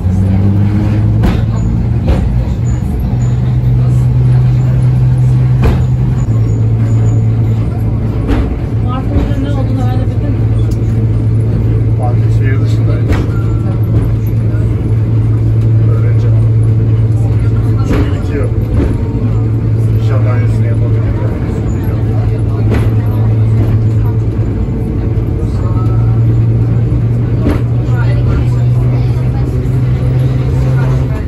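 Heritage street tram running along its track, heard from the driver's cab: a loud, steady low hum that shifts slightly in pitch a few times, with scattered clicks and knocks. Voices talk in the background.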